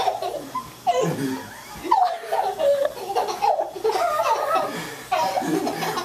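People laughing hard, in repeated bursts.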